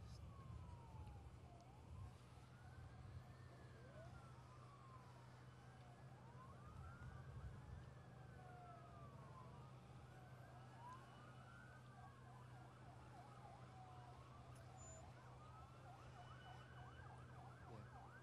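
Several faint emergency-vehicle sirens wailing together, their rising and falling tones overlapping, over a steady low hum.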